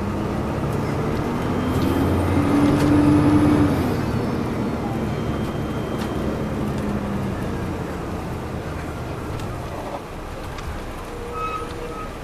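A 2002 MCI D4000 coach's Detroit Diesel Series 60 engine, heard inside the cabin from the rear seats, pulling the bus along. Its drone rises in pitch and grows loudest about three seconds in, then eases off as the bus cruises on, with road noise underneath.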